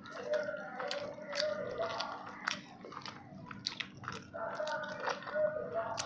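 Close-miked eating: wet chewing, lip smacks and sharp mouth clicks as a handful of rice with fish curry is eaten by hand.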